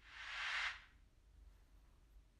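A short, soft whoosh of airy noise that swells over about half a second and stops before the first second is out.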